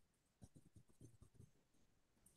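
Near silence: room tone with a scattering of very faint short ticks.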